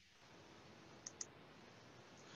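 Near silence with two faint, short clicks close together about a second in: a computer mouse clicking to advance a presentation slide.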